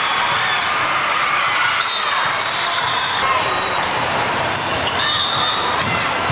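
Steady din of a large hall with several volleyball matches in play: many overlapping voices and calls, balls being hit and bouncing, and sneakers squeaking on the courts.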